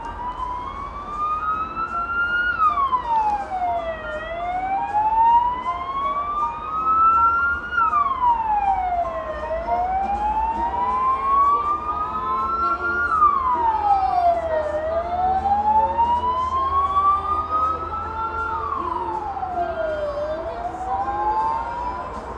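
A wailing siren: its pitch climbs slowly for about four seconds, then drops quickly, over and over, about four times.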